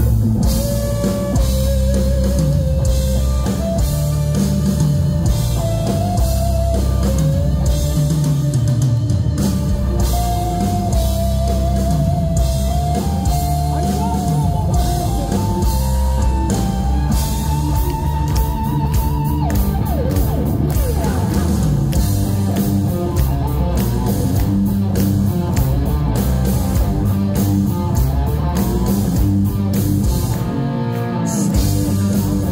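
Loud live hard rock band, instrumental: a Flying V electric guitar plays a slow lead melody of long held notes with vibrato, stepping upward in pitch over drums and bass. About twenty seconds in, the held melody gives way to faster, denser riffing.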